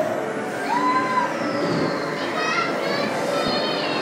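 Children shouting and squealing over the steady chatter of a crowd in a large indoor hall, with music playing underneath.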